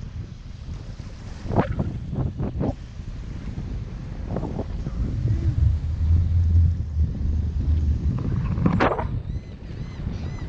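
Wind buffeting the microphone: a low, uneven rumble, heaviest in the second half, over a faint wash of surf. It is broken by a few short sharp sounds near the start and again near the end.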